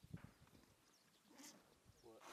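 Near silence: faint outdoor room tone with a couple of soft low knocks just after the start and a brief faint hiss about a second and a half in.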